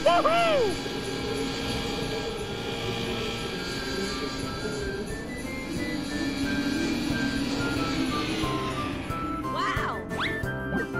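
Cartoon snowmobile engine sound effect, a steady drone that wavers in pitch as the snowmobiles ride off, opening with a short vocal exclamation. A simple melody plays over it in the second half.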